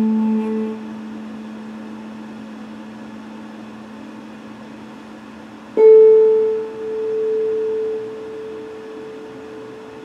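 Electric guitar sounding single picked notes that ring out: a low note struck just before and sustaining and fading through the first half, then a note about an octave higher picked about six seconds in that rings for several seconds.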